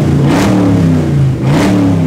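Chevrolet Camaro's 406-horsepower V8 revved twice in quick succession: each rev climbs quickly, then sinks back more slowly toward idle, the second rising about a second and a half in.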